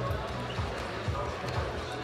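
Arena sound in a large hall: dull low thuds about three a second under background music and indistinct voices.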